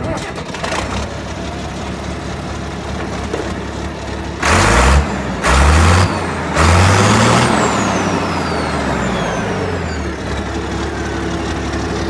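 International 1256 tractor's turbocharged six-cylinder diesel running just after starting, revved up three times in quick succession about halfway through, then settling back to a steady idle as the turbo's high whine falls away.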